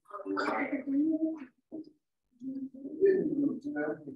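Indistinct talking in two stretches, with a short pause between them.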